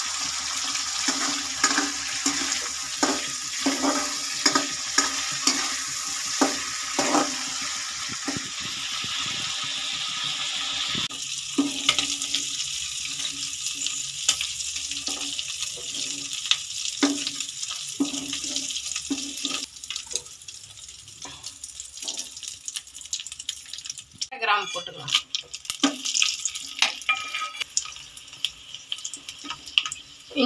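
Prawns sizzling in hot oil in an aluminium kadai, with a steel ladle repeatedly clicking and scraping against the pan. The sizzle is loudest for the first third, then drops as the fried prawns are lifted out, leaving a fainter sizzle and ladle taps.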